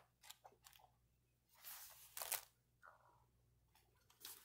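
Faint paper rustling as the pages of a paperback journal are flipped and handled, with a few short crinkles and a louder rustle about two seconds in.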